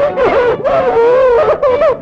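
A woman's voice vocalising without words, its pitch gliding up and down with a long held note about a second in, over soft film-song accompaniment.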